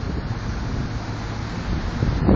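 Wind buffeting the microphone, a steady low rushing noise.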